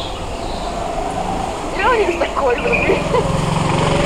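Go-kart engines running on the track, a steady low drone that grows a little louder in the second half, with faint voices over it.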